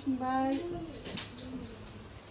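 A woman's voice in long, drawn-out, sing-song tones, with a few short rustles of cloth being handled around the middle.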